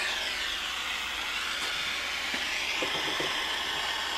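Aero acetylene soldering torch burning with a steady hiss whose pitch sinks and then rises again as the gas valve on the back of the handle is turned, tuning the flame toward a clean blue burn.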